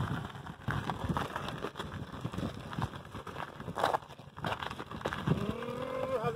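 Sand-rail dune buggy being push-started along a paved road: tyres rolling and shoes scuffing on the road, with uneven crackling and knocks. Past five seconds in, a drawn-out tone rises and holds.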